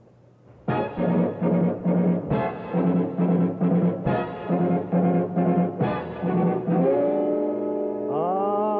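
Big band brass section playing a song intro: after a short pause, punchy brass chords hit in a repeated rhythm, then settle into a held chord near the end.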